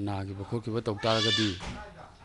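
A man speaking Manipuri, with a separate high-pitched, wavering cry about a second in, heard over his voice for about half a second.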